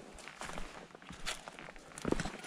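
A hiker's footsteps through dry fallen leaves on a rocky trail: a few irregular crunching, rustling steps.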